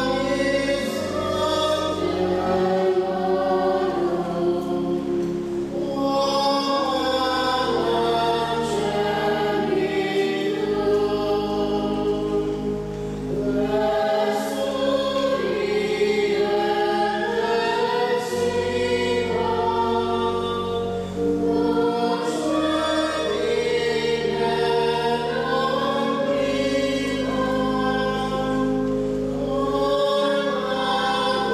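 Choir singing sacred music, with sustained low bass notes underneath that change every few seconds.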